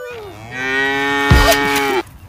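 A cow mooing at close range: one loud, long, steady moo of about a second and a half, starting about half a second in and stopping abruptly near the end.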